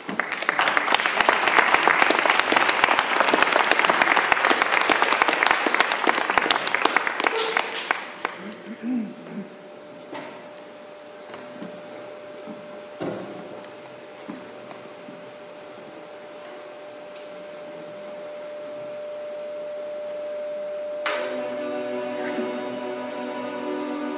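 Audience applause for about eight seconds, fading out. After a quieter stretch with a faint steady tone and a few small knocks, the string ensemble starts playing near the end.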